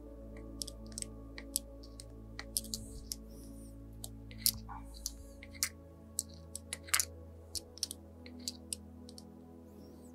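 Irregular sharp clicks and taps of small metal and plastic bicycle parts as a shift lever is fitted to a brake lever's clamp adapter and its small bolt is started by hand. A quiet ambient music bed plays underneath.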